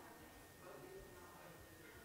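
Near silence: room tone with faint, indistinct voices in the background and a thin, steady high tone.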